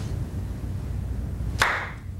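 A low steady hum, then a single sharp clap near the end that rings out briefly.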